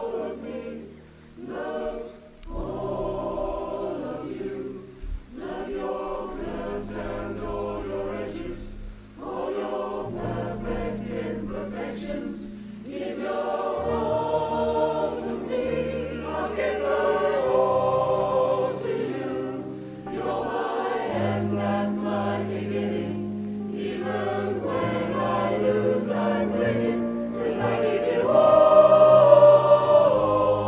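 A choir singing in several voice parts, with held chords over sustained low notes. Its phrases are broken by short breaths early on, and it swells louder near the end.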